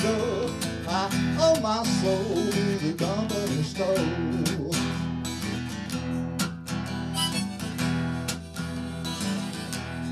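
Harmonica on a neck rack playing the melody over a strummed acoustic guitar, in an instrumental break with no singing.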